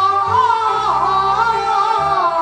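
Taiwanese opera (koa-á-hì) singing through a handheld microphone: one voice drawing out a long, wavering line that slides up and down in pitch, over instrumental accompaniment holding steady low notes.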